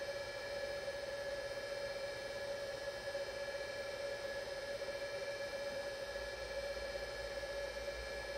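Juniper EX3300-24T network switch's cooling fans running with a steady whine of several pitched tones, at the lower speed they settle to once the switch has finished booting.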